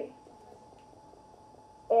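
A woman's voice trails off at the start, then a pause of room tone with a faint steady hum, and her voice starts again near the end.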